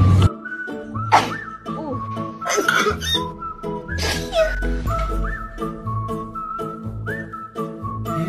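Music with a whistled melody: held whistle notes that slide up into pitch over a repeating bass line. A few short noisy bursts cut across it in the first half.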